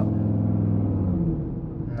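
Audi RS Q3's turbocharged five-cylinder engine, heard from inside the cabin, held at raised revs against the brakes for a launch. After about a second and a half the revs sag and the level drops: the launch fails to engage, with traction control still switched on.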